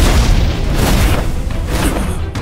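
Explosion boom from an animated fight's sound effects as an energy blast bursts, followed by two shorter sharp hits about a second apart. A loud dramatic music score runs beneath.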